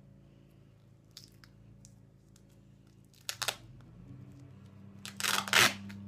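Duct tape being pulled off the roll: a short rip about three seconds in, then a longer, louder rip near the end.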